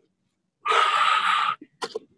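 A woman breathing out hard through the mouth: one forceful, breathy exhale of about a second, starting about two-thirds of a second in, the breath of physical effort.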